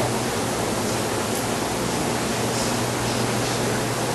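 Steady hiss with a low, even hum underneath: the background noise of a lecture-hall recording.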